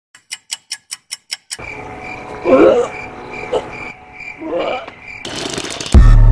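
Sound effects for a clock card: a clock ticking quickly, about five ticks a second, for a second and a half. A steady high electronic alarm-like tone with repeating pulses follows, over which come two loud throaty sounds about two seconds apart. A short burst of noise comes near the end.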